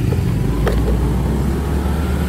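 Steady low rumble of a road vehicle moving in traffic, with a brief click about a third of the way in.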